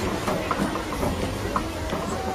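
Safari ride truck running with a low rumble, under indistinct voices and short repeated higher-pitched sounds.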